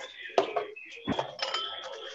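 A few light clicks and clinks amid faint background noise, picked up over an open video-call microphone.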